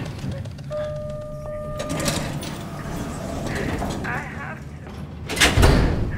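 Sound effects of getting into a car: a steady electronic two-tone beep about a second in over a low rumble, then a heavy car door shutting with a thud near the end.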